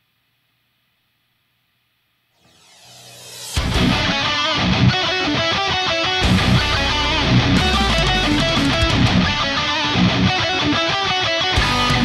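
Near silence for about two seconds, then music fades in. From about three and a half seconds in, an ESP LTD electric guitar plays heavy metal riffs at full level.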